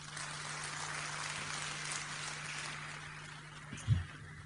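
Faint audience applause that rises as the speech breaks off and dies away over about three seconds, over a steady low hum.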